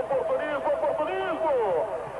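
Speech: television football commentary, a man's voice talking, with a steady tone running underneath.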